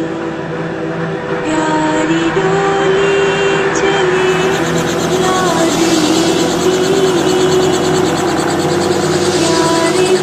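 Small two-bladed helicopter running on the ground with its main rotor turning, a rapid even chopping coming in about four seconds in, heard under background music.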